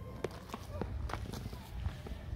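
Footsteps on a road, a few irregular scuffs and steps, with faint distant voices in the background.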